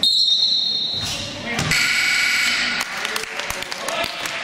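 Referee's whistle blown in one steady shrill blast of about a second, stopping play on a shot. A second, warbling high sound follows about halfway through, then a few short knocks of ball bounces amid voices in the gym.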